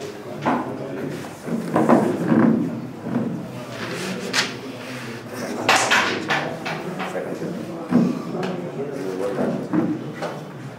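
Wooden carrom coins and striker clacking and knocking against each other and the carrom board in several sharp, separate knocks, with voices talking nearby.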